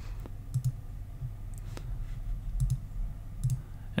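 A handful of faint, scattered computer mouse clicks, made while duplicating a layer in Photoshop, over a low steady hum.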